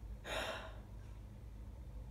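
A woman's breathy gasp of amazement, about half a second long, soon after the start.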